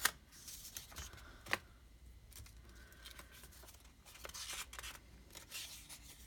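Paper being handled: a small paper booklet turned and flipped open, with soft rustling and a couple of sharp taps, one at the start and one about a second and a half in.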